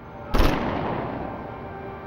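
A ceremonial rifle volley from a funeral honor guard's firing party: one sharp crack about a third of a second in, ringing on and fading slowly.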